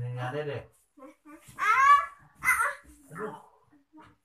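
Toddlers babbling and calling out in short, wordless bursts with brief gaps, one rising-and-falling cry about two seconds in the loudest.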